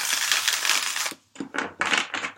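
A deck of tarot cards being shuffled by hand: a dense, continuous riffle of cards that stops abruptly a little past one second in, followed by a few short taps of the deck.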